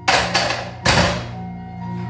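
Loaded barbell racked into the steel uprights of a weight bench after a heavy bench-press single: three metal clanks within the first second as the bar and plates land and settle, each ringing briefly, over background music.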